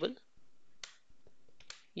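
A few faint, separate computer keyboard key clicks as a short word is typed, with a speaking voice trailing off at the start.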